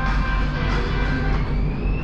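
BTS Skytrain door-closing chime tones fading out, then the train's electric traction motors starting to whine, rising in pitch as it pulls away from the platform over a steady low rumble.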